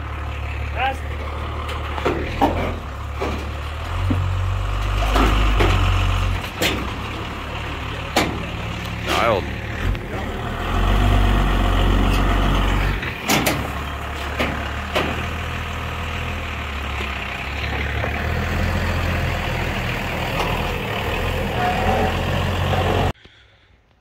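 Pickup truck engine running under load as it backs and manoeuvres a heavy car-hauler trailer, its low rumble swelling in two surges of throttle about four and eleven seconds in, with the clutch being slipped hard enough to leave a smell of hot clutch. A few sharp knocks and clicks come over it, and the sound cuts off suddenly near the end.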